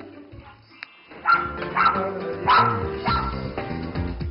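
Small dog yapping four times, about half a second apart, over background music.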